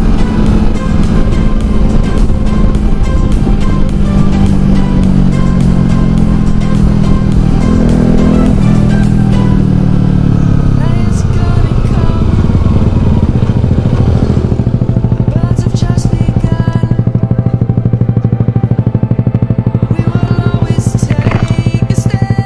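Kawasaki Versys motorcycle engine running at road speed, its note falling about halfway through as the bike slows down, then idling steadily with an even pulse once it has stopped.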